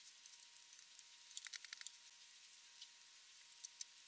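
Near silence: a few faint light ticks of fingers handling a wooden violin bridge, in a cluster about a second and a half in and again near the end, over a faint steady high tone.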